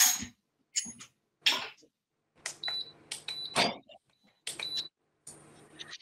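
Electric hob's touch controls beeping as it is switched on and set to medium-high heat: several short high beeps over a low electrical hum, after a few light knocks of pans in the first second or so.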